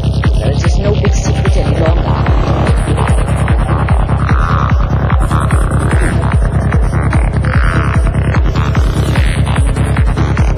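Forest psytrance music: a fast, steady kick drum beat, about two and a half beats a second, with a throbbing bassline filling the gaps between beats. From about four seconds in, swirling synth swells rise and fade above it.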